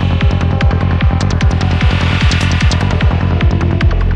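Psytrance track: a pitch-dropping kick drum hits about two and a half times a second over a throbbing, rolling bassline. Hi-hats come in much denser right at the end.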